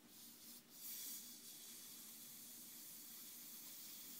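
Air hissing faintly out of the bleed valve on top of a Fernox TF1 magnetic central heating filter, opened with a radiator key to vent the air trapped when the filter was refilled. The hiss is a little stronger in the first second or so, then steady.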